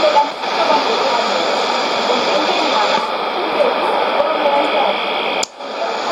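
Shortwave AM broadcast on 17850 kHz heard through a Sony ICF-2001D's speaker: speech in Oromo buried in heavy hiss and static. Near the end there is a click and a brief dropout as the receiver is retuned by 0.1 kHz.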